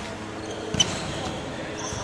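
Court shoes thudding and squeaking on a wooden hall floor during badminton footwork, with one hard stamp and squeak about a second in, in a reverberant sports hall.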